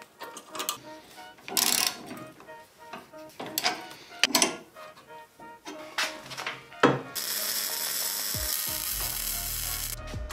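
Socket ratchet wrench tightening a bolt: about six short bursts of ratchet clicking, each as the handle is swung back. About seven seconds in, this gives way to a steady hiss.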